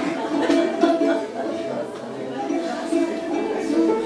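Russian balalaika and piano playing an arranged melody, a theme from Soviet TV films.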